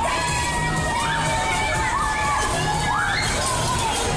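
Children shouting on a bumper-car ride, with several long cries that sweep up in pitch, over music with a steady beat.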